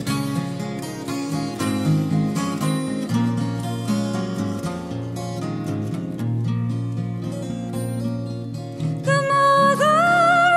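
Acoustic guitar playing an instrumental passage of a 1973 female-vocal folk song, with plucked and strummed notes over a moving bass line. About nine seconds in, a woman's voice comes back in, singing held notes with vibrato.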